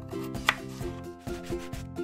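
A miniature kitchen knife chopping bell pepper on a tiny cutting board, in quick, sharp chops about four to five a second, with one louder click about half a second in. Steady background music plays under the chopping.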